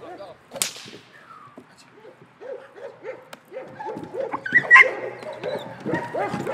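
A single sharp crack about half a second in, then a young Belgian Malinois barking repeatedly, two to three barks a second and growing louder, as it is agitated by a decoy in bitework.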